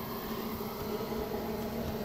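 A steady low buzzing hum with a faint hiss, even in level throughout.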